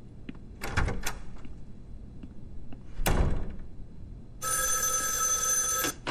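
An old-fashioned desk telephone's bell rings once, a steady ring of about a second and a half that starts about four and a half seconds in and stops just before the end. Before it come a few sharp knocks, the loudest about three seconds in.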